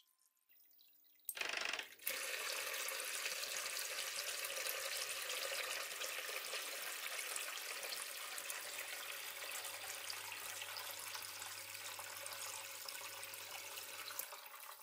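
Small electric water pump switched on by an automatic water level controller about a second in, sending a stream of water from a hose into a plastic bucket with steady splashing and churning and a faint low motor hum. The water noise drops off right at the end as the pump cuts out.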